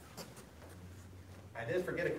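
Quiet room with a steady low hum and a few faint soft rustles, then a man starts talking about one and a half seconds in.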